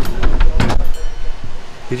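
Knocks and clatter as the bell pull in a miniature train's cab is tugged, followed in the second half by a faint, steady ringing tone from the train's bell.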